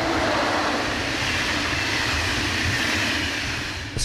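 Passenger train hauled by an electric locomotive passing at speed, a steady rushing of wheels and air that eases slightly near the end.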